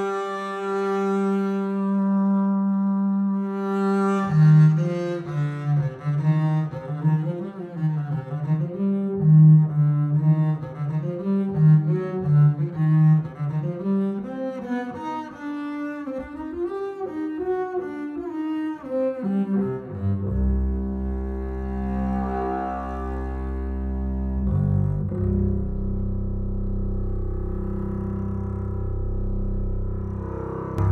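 Leonid Bass, a sampled orchestral double bass, bowed and played from a keyboard. It holds one note for about four seconds, then plays a moving line of shorter notes, and about twenty seconds in drops to low sustained notes. Its tone colour shifts as the colour control blends between harmonics and sul ponticello bowing.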